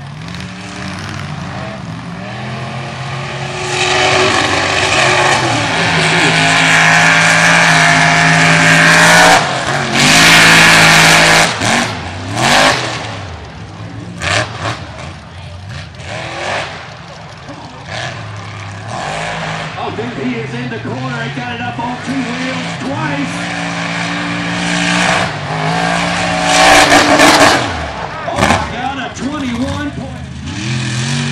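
Big-block mega truck engines revving hard on a dirt race course, the pitch climbing and falling as the throttle opens and closes. The loudest full-throttle stretches come around ten seconds in and again near the end.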